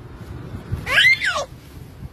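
A baby's short, high-pitched squeal about a second in, rising and then falling in pitch: a strained sound from an infant struggling to crawl on her tummy.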